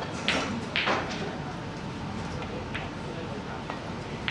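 Snooker shot: a sharp click of the cue tip striking the cue ball, then a second click about half a second later as the cue ball hits a red, with a faint tick a couple of seconds on.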